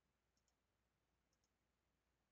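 Near silence: faint room tone, with two very faint mouse-button clicks, each a quick double tick, about half a second and a second and a half in.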